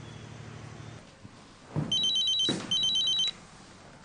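Mobile phone ringing: two short bursts of rapidly pulsing electronic tones, starting about two seconds in and stopping a little after three seconds.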